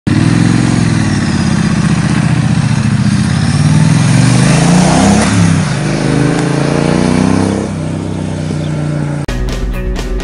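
2018 Triumph Street Twin's 900cc parallel-twin engine through a Vance & Hines aftermarket exhaust, pulling away and accelerating hard, its note rising and falling through the gears and then fading as the bike rides away. Near the end it cuts off abruptly into rock music with guitar and drums.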